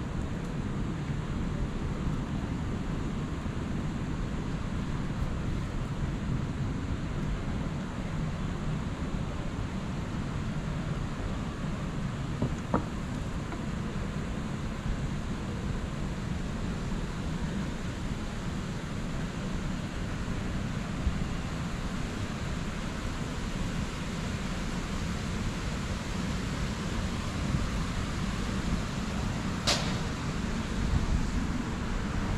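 Steady outdoor city ambience: an even, low-pitched hum of distant traffic and urban machinery, with a short tick about 13 s in and another near the end.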